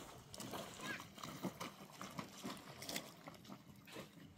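Bare feet treading wet laundry in a plastic basin of water: a run of irregular squelching, sloshing steps.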